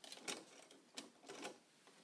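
Faint plastic clicks and taps, several spread over two seconds, as the blade holder is unlocked and lifted out of the carriage of a Brother ScanNCut cutting machine.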